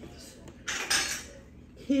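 Cups being handled on a table: one brief scraping clatter about a second in.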